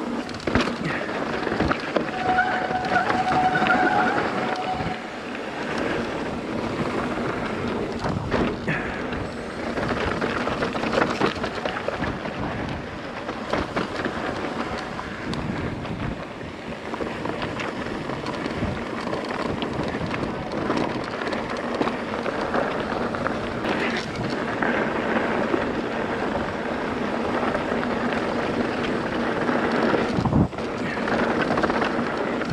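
Mountain bike rolling fast down a dry dirt and gravel downhill trail: tyres crunching over the loose surface and the bike rattling over bumps, with wind on the microphone. A short squeal sounds about two seconds in.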